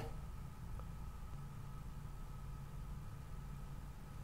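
Quiet room tone: a steady low hum with a faint high tone, and one faint tick about a second in.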